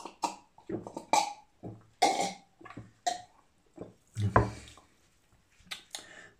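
A person drinking fizzy home-made cola from a glass: a series of short gulps, swallows and breaths. One louder, deeper throat sound comes about four and a half seconds in.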